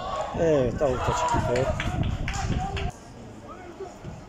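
Raised voices shouting on a football pitch, high-pitched and sliding, with a few sharp knocks about two seconds in. The sound cuts off abruptly just before the end.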